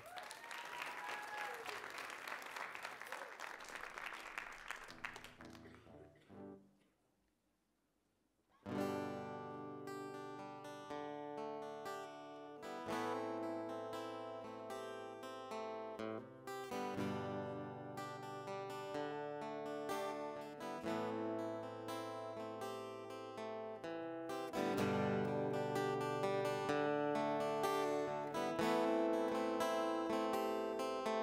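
Audience applause that fades out over the first few seconds. After a short silence, a solo steel-string acoustic guitar starts playing about nine seconds in: ringing chords with brief pauses between phrases.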